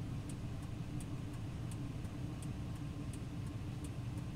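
Pickup truck engine idling steadily, with a light tick about every 0.7 s from the hazard flasher.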